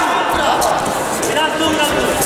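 Voices calling out from ringside during an amateur boxing bout, over dull thuds of boxing gloves and footwork on the ring canvas.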